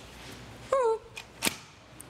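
A short, high, falling vocal sound from a person about a second in, then a single sharp click, over faint room noise.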